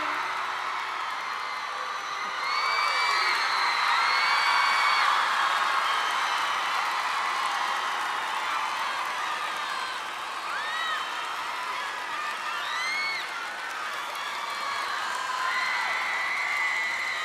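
Live concert audience cheering and applauding, with shrill whistles rising and falling over the clapping, as the song's last held note ends. The cheering swells a couple of seconds in and stays strong for a few seconds.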